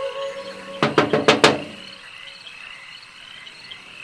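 Knuckles rapping on a window, a quick series of about five knocks about a second in. Insects chirr faintly and steadily in the background.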